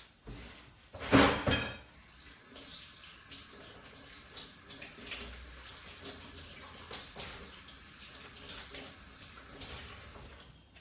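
Kitchen tap running into a sink as a Nutribullet blade assembly and its seal are rinsed, with small knocks of the parts in the sink. A loud, brief sound comes about a second in.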